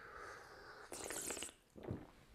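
A person sipping tea from a cup: soft airy slurping, with a brighter slurp about a second in and a short low sound near the end.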